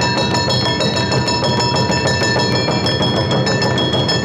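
Awa odori street band playing: shinobue bamboo flutes holding high notes over the brisk, steady strokes of a hand-held kane gong and taiko drums.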